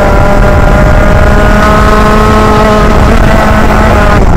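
Rotax Max 125 kart's single-cylinder two-stroke engine running at high revs under throttle, with a near-steady pitch that eases slightly near the end.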